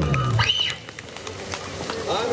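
A live band's low sustained note rings out and cuts off about half a second in, followed by a short high whistling tone and a lull of stage background noise.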